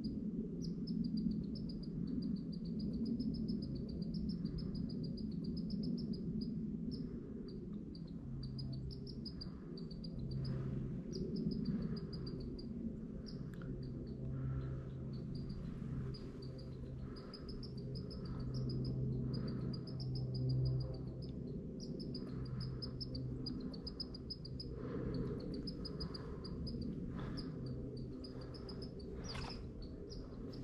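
Red squirrel chirping at an intruder: long runs of quick, high chirps repeating over and over, the squirrel's alarm call at a person nearby.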